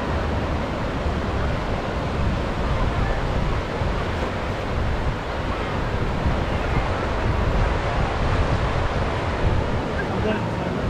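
Sea waves washing onto the beach in a steady wash of surf, with wind rumbling on the microphone.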